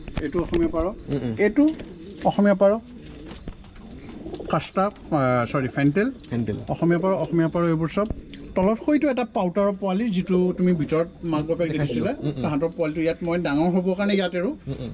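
Many domestic pigeons cooing at once, their coos overlapping, over a steady high trill of crickets.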